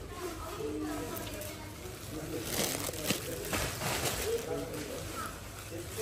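Indistinct voices of people talking in a shop, with a few brief rustling noises around the middle.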